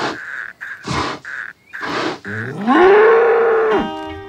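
Cartoon bull's voice: three short breathy bursts about a second apart, then a long moo that rises in pitch, holds, and cuts off just before the end.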